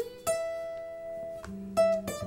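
Blues guitar opening a song with single plucked notes: one note rings out for over a second, then more notes are picked near the end.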